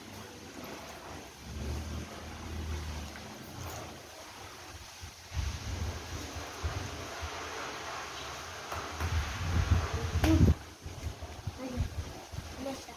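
Wind and handling noise rumbling on a phone microphone in uneven gusts, with a short louder burst about ten seconds in.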